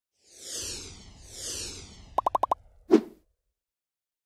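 Synthetic logo-reveal sound effects: two falling whooshes, then a quick run of five plinks and a single lower pop, over by about three seconds in.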